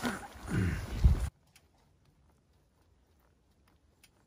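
About a second of rustling handling noise and a low voice, cut off abruptly, then near silence.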